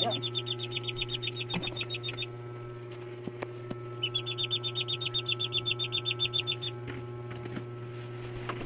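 A duckling peeping in rapid, high, evenly repeated calls, in two bouts with a pause of about two seconds between them.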